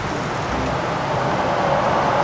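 Road traffic on the street: a vehicle going by, a steady rushing noise that slowly grows louder.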